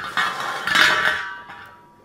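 Stainless steel fountain lid clattering as it is handled on a table. It starts suddenly, and a metallic ring fades away over about a second and a half.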